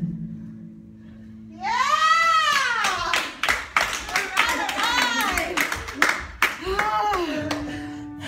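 A small group clapping and cheering: a long high 'woo' rising and falling about a second and a half in, then scattered applause with more short whoops and voices.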